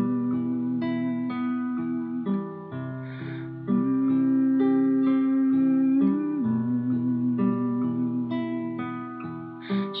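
Instrumental passage of acoustic guitar music: plucked notes changing every second or so under a long held, slightly wavering tone. A singing voice comes in right at the end.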